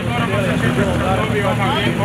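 Race car engine idling at a start line, a steady low hum, with several people talking over it.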